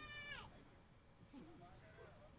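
A high-pitched, meow-like animal cry rising and falling in pitch, ending about half a second in; faint voices follow in the background.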